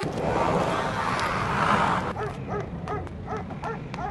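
A noisy wash in the first half, then a small dog yapping quickly, about four high yaps a second, from about halfway through.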